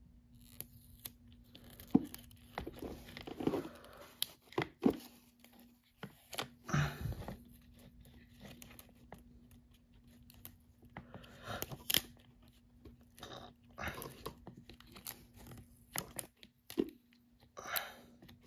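Sticker decal being peeled and pressed onto a hard plastic toy piece by hand: irregular soft rustles, crinkles and small plastic clicks, with a sharper click about two seconds in and others near twelve seconds.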